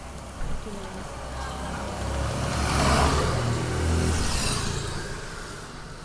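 A motor vehicle passing by, its engine and road noise swelling to a peak about three seconds in and then fading away.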